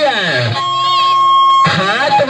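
Music: a falling pitch slide, then a held steady note for about a second that stops abruptly before the song carries on.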